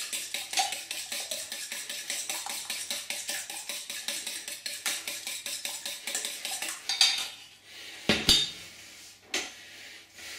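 Eggs being beaten in a stainless steel bowl, the utensil clinking against the metal rapidly and evenly, about six times a second. The beating stops about seven seconds in, followed by a few separate louder knocks as the bowl is handled and set down on the glass stovetop.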